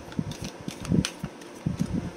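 Affirmation cards being handled: irregular soft knocks and clicks over a steady fan hum.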